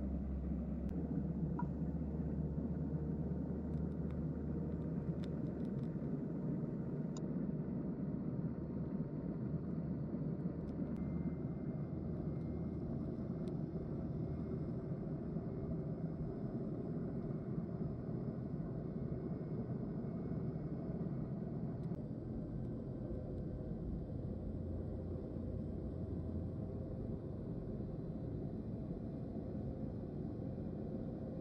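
Muffled, steady low rumble of a boat's engine and propeller heard underwater while the boat pulls on a set anchor under rising thrust.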